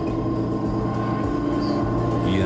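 Steady drone of a Zeppelin airship's propeller engines heard from inside the gondola during lift-off, an even mechanical sound with a steady high tone running through it.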